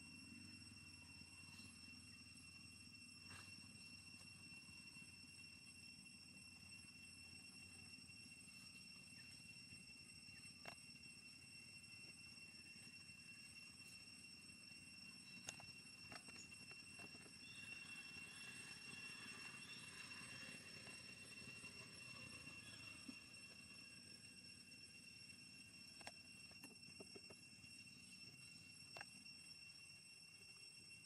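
Near silence: faint background hiss with a steady high-pitched tone and a few faint scattered clicks.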